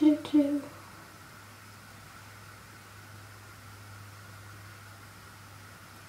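Quiet, steady background hum with a faint even hiss, which the speaker puts down to a waterfall behind the room. A brief vocal sound comes right at the start.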